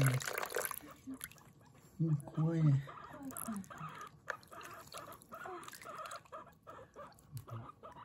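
A guinea pig squeaking repeatedly while being washed, short calls about three a second through the second half, over running water. A low human voice murmurs briefly about two seconds in.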